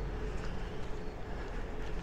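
Street-sweeping vehicle running: a steady low engine rumble with a faint steady hum over it.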